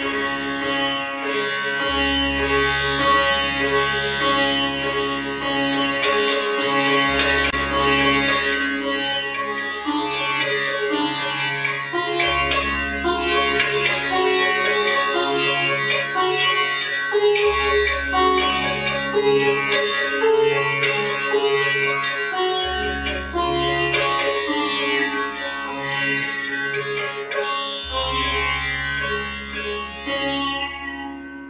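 Sitar music: a melody of quick plucked notes over a steady drone, with a deep low note that comes in and drops out about every five seconds.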